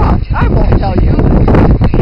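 Women laughing hard in short, high-pitched squeals and gasps, over a steady low rumble on the microphone.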